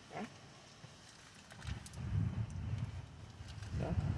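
Wind gusting on the microphone: a low, uneven rumble that starts about halfway through and grows louder, with a few faint clicks just before it.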